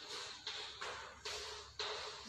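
Chalk writing on a chalkboard: about four short strokes as letters are written.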